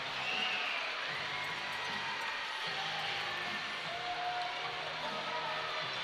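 Music over the steady hubbub of an arena crowd.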